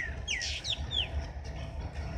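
Birds calling in a farmyard: about five short chirps in the first second, each falling quickly in pitch, over a low rumble.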